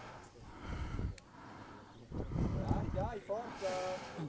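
Faint distant voices calling out on an outdoor football pitch, with a few short pitched shouts in the second half, over low rumbling background noise.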